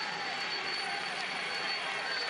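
Steady roar of live race ambience from a Tour de France climb: a roadside crowd mixed with engine noise from the race convoy, with a thin steady high tone running through it.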